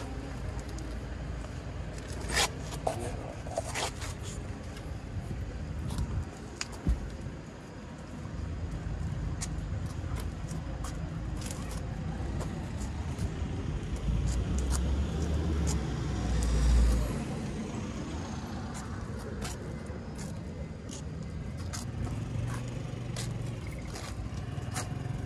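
Outdoor background rumble of traffic, with a few sharp clicks and knocks in the first seven seconds. A vehicle swells past, loudest about seventeen seconds in.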